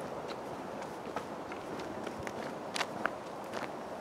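Footsteps of a person walking on a path, irregular steps over a steady outdoor background hiss, with a few sharper steps just under three seconds in.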